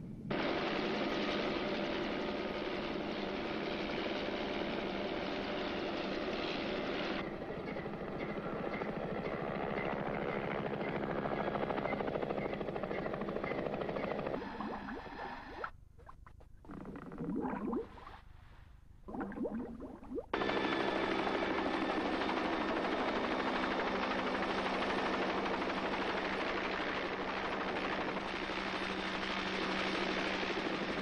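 Steady helicopter engine and rotor noise. In the middle, for about five seconds, it gives way to underwater scuba breathing: bursts of bubbling from a diver's regulator. Then the engine noise comes back just as loud.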